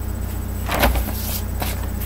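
Sheet of paper rustling as it is handled and lowered, in two short rustles, the first with a dull bump, over a steady low hum.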